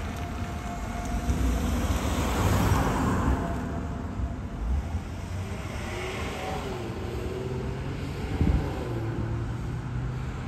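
Cars on a street: one drives past, its tyre and engine noise swelling and fading a couple of seconds in, then an SUV moves off at low speed. A short thump comes near the end.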